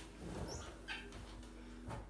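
A wooden kitchen cabinet door being pulled open, faint, with a couple of brief high squeaks about half a second in and light clicks.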